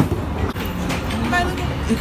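Skee-ball ball giving a sharp knock on the lane right at the start, then a steady arcade din with people talking in the background.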